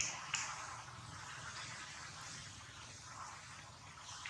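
Steady outdoor background hiss with two short clicks near the start, about a third of a second apart.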